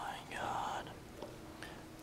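A person whispering briefly in the first second, then faint handling noise over a steady low hum.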